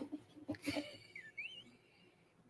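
Faint sounds of a man sipping beer from a glass: a few soft small noises, then a short wavering squeak about a second and a half in.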